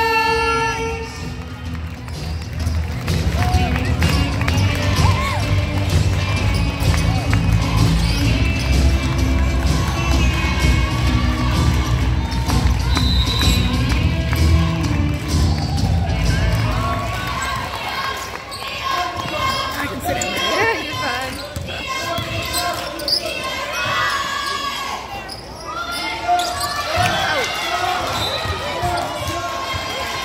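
A basketball game on a gym's hardwood court. Loud, bass-heavy music plays over the hall for roughly the first half and then stops. After that come the ball's bounces, players' running footsteps, sneaker squeaks and scattered shouts echoing in the gym.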